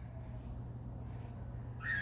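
Quiet background with a steady low hum and faint noise, and no distinct sound event.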